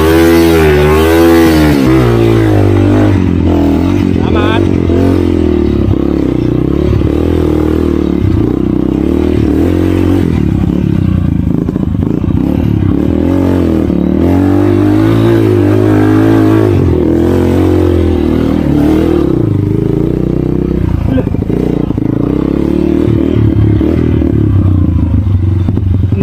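Small motorcycle engine revved hard in the first two seconds while the bike is pushed up a muddy bank, then running along a rough dirt trail with the throttle rising and falling.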